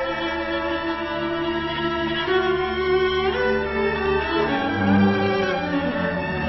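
Solo cello playing a held, bowed melody over the string section of a Chinese orchestra. About two-thirds of the way through, the line moves down into deeper notes.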